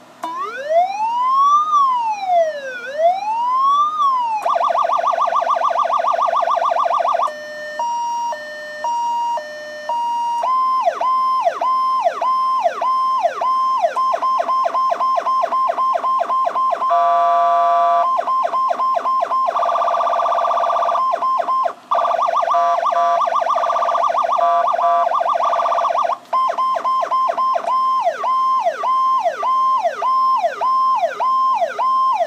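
Powercall DX5200 electronic siren, freshly refurbished, being switched through its tones: a slow rising-and-falling wail for about four seconds, then rapid pulsing, an alternating high-low two-tone, and mostly a fast repeating yelp of about two sweeps a second, with a few other tone patterns cut in and short breaks where the mode changes.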